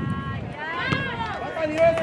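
Players and coaches shouting on a soccer field: several short raised calls, then one longer held shout near the end, over an open-air background rumble.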